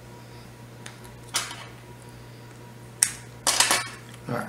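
Handling noises from small plastic glue bottles being picked up and their caps worked at: a short scrape about a second in, a sharp click about three seconds in, then a quick clatter.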